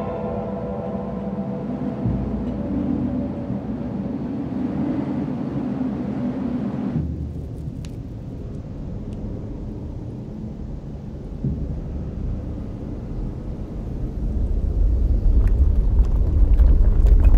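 A low, steady rumbling ambience that changes abruptly about seven seconds in, losing its higher hiss, and grows louder near the end.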